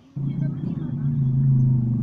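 A motorcycle engine idling steadily, starting suddenly just after the start.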